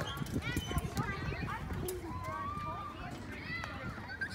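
Children's voices shouting and calling at a busy playground, one long held call about halfway through, with a quick run of light knocks in the first second.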